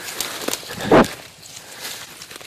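Footsteps crunching and rustling through dry leaves and twigs, with one louder crunch or thump about a second in.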